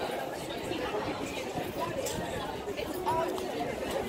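Background chatter of many people talking at once around outdoor café tables and passers-by, a steady babble of overlapping voices with no single voice standing out.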